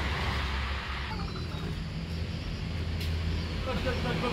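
Steady low rumble of background noise under a faint hiss, with no clear single event.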